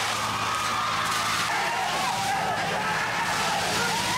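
Water cannon jet hissing over a crowd that is shouting, with a steady low hum underneath.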